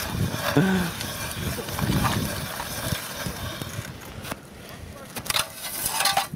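Hand ice auger being cranked into river ice, its steel blades scraping and grinding unevenly as they bore the hole.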